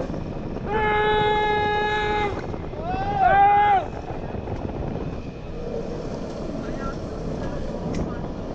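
Riders' voices calling out in long held "whoo"-like cries, one steady for over a second and then a shorter swooping one, over the steady mechanical noise of a roller coaster train climbing its lift hill.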